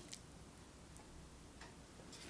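Near silence: room tone with a faint click just after the start and another, fainter one near the end.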